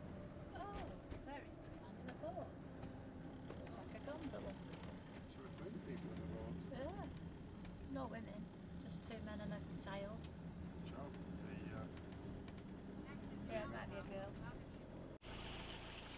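Motorhome engine and road noise heard from inside the cab while driving: a steady low drone, with faint, indistinct voices over it. The sound breaks off suddenly near the end.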